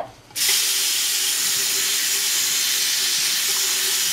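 Kitchen tap running in a steady stream onto a glass microwave turntable plate held in the sink, rinsing off soap suds. The water comes on about half a second in, just after a light clink of the plate.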